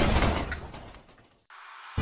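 Rumble of a passing train in an animated intro, loud at first and fading away over about a second and a half, then a faint steady hum.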